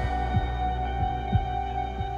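Background music score: a sustained low drone with held tones over it, and a deep low pulse about once a second.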